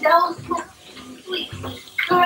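Wet kissing sounds, lips smacking at close range, with a voice heard behind them.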